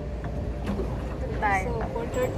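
Pedal swan boat on the water: a steady low rumble, with a short burst of voice about one and a half seconds in.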